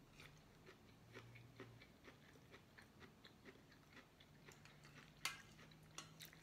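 Faint chewing of a mouthful of corn kernels: small, irregular wet clicks from the mouth, with one sharper click about five seconds in.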